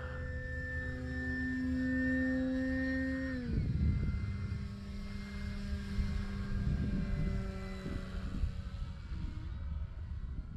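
Electric motor and propeller of a radio-controlled E-Flite Carbon Z Cessna 150T whining steadily on a low, slow pass. About three and a half seconds in the pitch drops sharply, and a lower, fainter tone carries on over a low rumble.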